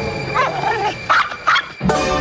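An animal's long falling whine followed by a few short yelping cries, over music.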